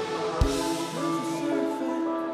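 Live band music: sustained chords held steadily, with a single heavy drum hit landing about half a second in.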